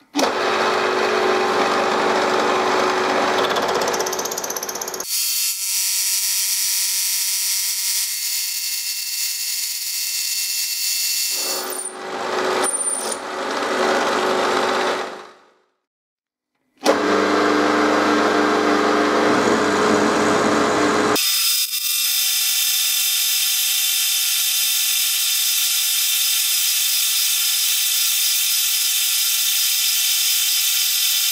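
Milling machine cutting aluminium with an end mill, heard as a series of clips joined by cuts. Stretches of rough, noisy cutting alternate with a steadier whine carrying several high tones. About halfway through there is a second of silence.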